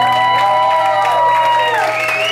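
Last chord of a live song ringing out on guitar while the audience starts to cheer. A long whoop holds for about a second, then falls away near the end.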